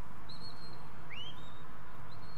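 Handler's whistle commands to a working sheepdog: a short high whistle held for about half a second, then about a second in a second whistle that slides up in pitch and holds. Steady background noise runs under them.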